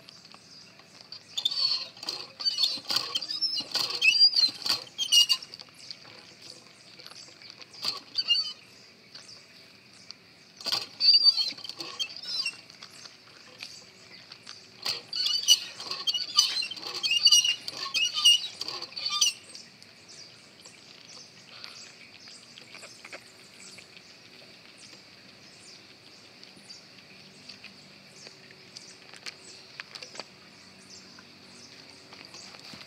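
Water from a cast-iron hand pump splashing into a hand-held container in several spurts over the first twenty seconds, with pauses between, then only light knocks and handling clicks.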